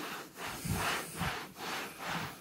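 Terry cloth rubbing back and forth over a vinyl seat cover: about four soft swishing strokes, roughly two a second, as the cloth and WD-40 wipe off wax china-marker lines.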